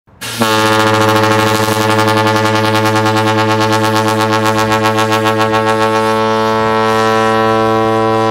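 Battleship USS New Jersey's horn sounding one long, loud blast at a steady deep pitch, starting about half a second in.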